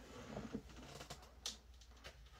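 Faint handling noises: soft rustling and a few light clicks, with one sharper click about one and a half seconds in.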